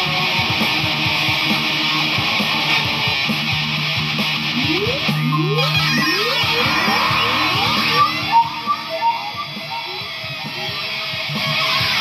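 Electric guitar played through an effects processor with a dense, distorted tone: picked chords, then a run of rising pitch slides around the middle, a few sharp stabs, a quieter passage, and full chords again near the end.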